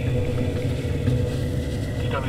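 Deep, steady low rumble with faint sustained tones held above it.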